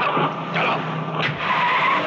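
A car speeding off, its engine running hard and its tyres screeching.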